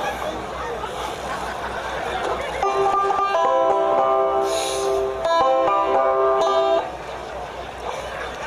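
Banjo strummed in a few ringing, held chords for about four seconds, starting a little before three seconds in, over a murmur of voices.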